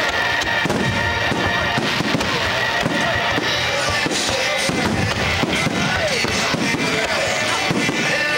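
Aerial fireworks shells bursting in rapid succession, many bangs and crackles close together, with music playing underneath.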